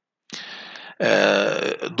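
A man's voice between phrases: a short, faint breathy throat noise, then a drawn-out low vocal sound lasting under a second, with speech resuming at the end.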